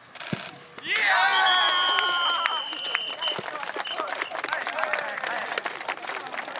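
Crowd of spectators cheering with a burst of high-pitched voices and shrieks about a second in, one held for about two seconds, then clapping and applauding.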